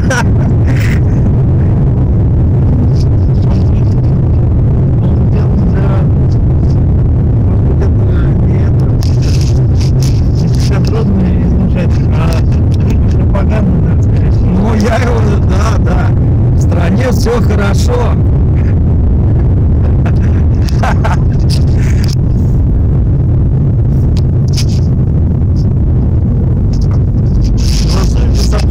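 Loud, steady low rumble of a moving car heard from inside the cabin, with indistinct voices over it in the middle.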